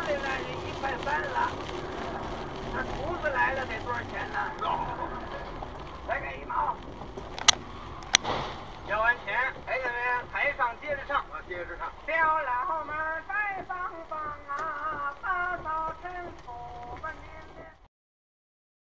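Two sharp bangs about half a second apart, some seven and a half seconds in, from a car crash on the road ahead, with voices talking in the car before and after.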